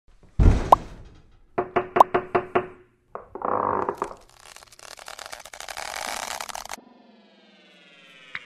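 Cartoon sound effects: a thump, a quick run of about six knocks, a swelling rush of noise that cuts off suddenly, then a falling glide of tones near the end.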